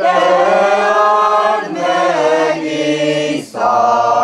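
A mixed choir of men's and women's voices singing a cappella in long held phrases. The singing breaks off for a moment about three and a half seconds in, then carries on.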